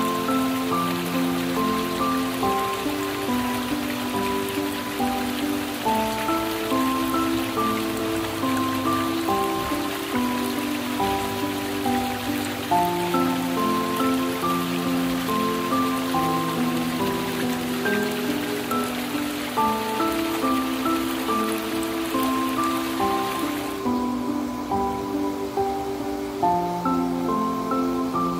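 Slow, relaxing instrumental music of held notes stepping through a calm melody, over a steady rain-like hiss that cuts off about two seconds before the end.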